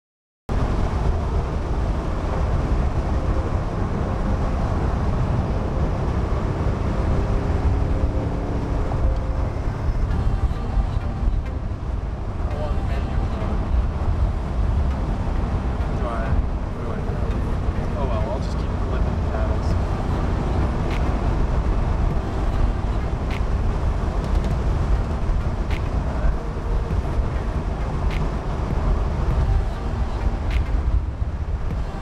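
In-cabin driving noise of a BMW M850i convertible on the move: a steady, loud rumble of engine, tyre and wind noise. It starts abruptly about half a second in, and faint ticks come every two or three seconds in the second half.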